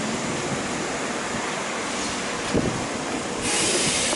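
Steady noise of a train standing at a station platform, with a short knock about two and a half seconds in and a louder, brighter hiss starting near the end.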